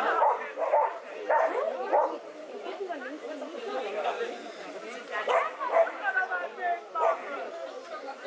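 A dog barking and yelping in repeated short bursts, busiest in the first two seconds and again from about five to seven seconds in, over indistinct voices.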